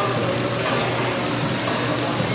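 Tea pouring in a steady stream from a teapot's spout into a small ceramic cup.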